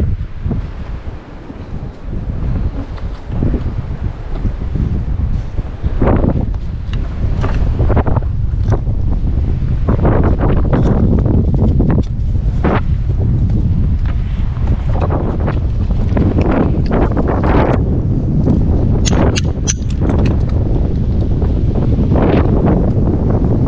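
Wind buffeting the microphone, with scattered knocks and scrapes and a quick run of sharp taps near the end.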